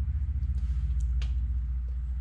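A steady low background hum, with two faint light ticks about a second in.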